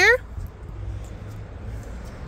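Steady outdoor background noise with a low rumble and no distinct events, after the last word of speech trails off right at the start.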